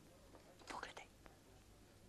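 A brief, faint whisper about half a second in, over near silence with a low steady hiss.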